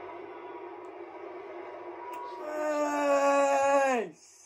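A man's long, drawn-out shout on one held note, building much louder over the last second and a half and dropping in pitch as it breaks off: a football fan's cry of excitement as his team scores.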